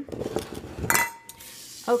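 Glass jar candles clinking and knocking as they are handled, with one sharp clink about a second in that rings briefly.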